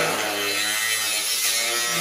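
Handheld electric power tool running steadily as it cuts through a sheet of metal diamond plate.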